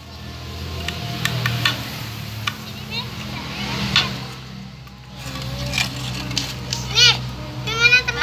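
Children's voices during outdoor play, with high-pitched calls about seven seconds in and near the end, and a few light knocks from handling things. A steady low motor hum runs underneath.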